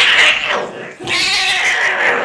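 A cat letting out two long, wavering, high-pitched meows while being held down against its will, the second starting about a second in.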